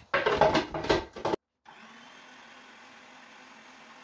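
Electric food processor running as it blends a soft cream-cheese mixture. It is loud and churning for about a second and a half, then, after a brief break, runs on more quietly and steadily.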